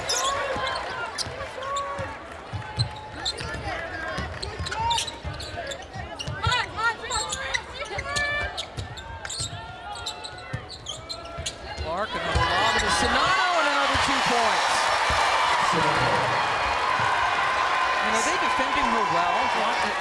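Basketball dribbled on a hardwood arena court amid on-court game sounds. About twelve seconds in, an arena crowd breaks into loud, sustained cheering for a made basket.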